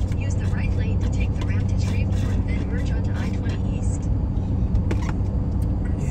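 Steady low hum of road and engine noise inside a moving car's cabin, with soft, indistinct talking over it.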